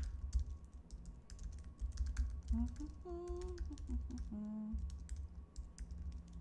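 Typing on a computer keyboard: irregular runs of quick keystroke clicks.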